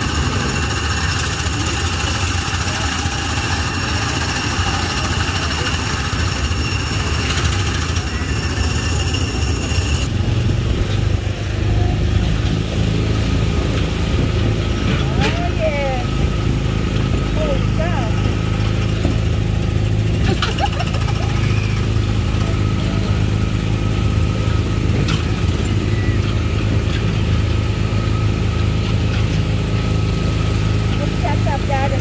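Small petrol engines of Tomorrowland Speedway ride cars running. At first they are heard passing by; about ten seconds in, the sound becomes a steady low drone from one car being driven along the track.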